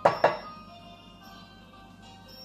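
Two sharp knocks, a spatula striking the rim of a glass mixing bowl, in quick succession at the very start with a brief ringing after each, over background music.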